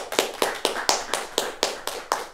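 Audience clapping, with individual claps standing out about four to five times a second.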